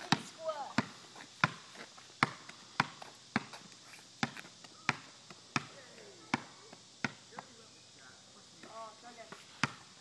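A basketball being dribbled on an asphalt driveway: about ten sharp bounces, roughly one every two-thirds of a second, that stop about seven seconds in. Faint voices murmur between the bounces.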